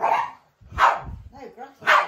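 Dog barking, three sharp barks about a second apart.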